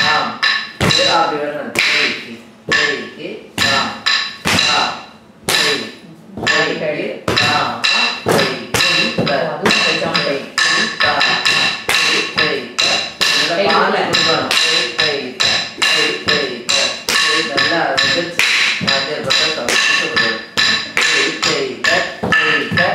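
Quick rhythmic strikes of a wooden stick on a wooden block (the tattukazhi), beating time for dance steps, with rhythmic sollukattu syllables chanted alongside. The strikes are sparser in the first few seconds, then come steadily several times a second.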